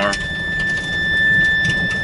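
Low rumble of a vehicle moving slowly, heard from inside the cabin, swelling about halfway through, with a thin, steady high-pitched whine over it.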